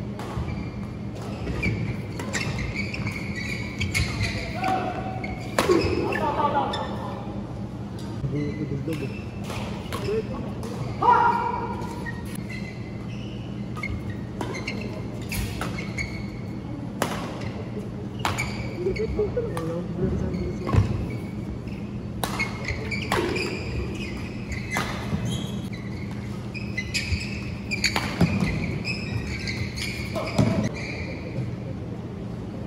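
Badminton rally: sharp strikes of rackets on the shuttlecock at irregular intervals, ringing in a large hall, with players' voices and shouts between the hits.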